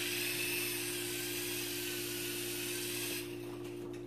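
Sky Rover Aero Spin toy helicopter in flight, its tiny electric motor and rotors giving a steady high-pitched whir. The whir cuts off a little after three seconds in as the toy comes down.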